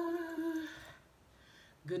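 A woman's voice holding one long, steady note, hummed or drawn out, for about a second, then quiet.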